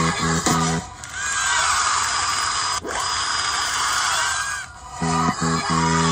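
Gospel music remix playing from a Stem Player while its touch sliders are worked. A chopped, stuttering beat comes first, then about four seconds of swirling tones that sweep up and down, with one sharp click midway. The stuttering beat returns near the end.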